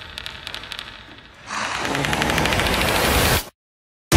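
Suspense sound design: faint scattered clicking, then a fast rattling that swells up loudly about one and a half seconds in and cuts off abruptly into dead silence about half a second before the end.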